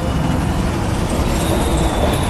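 Wind buffeting a clip-on microphone in a loud, uneven low rumble, over the steady noise of road traffic going by.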